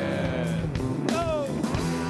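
Live rock band playing, with guitar to the fore; a little after a second in, a note slides down in pitch.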